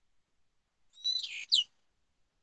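A bird's brief chirp about a second in: a short high note followed by a quick falling note.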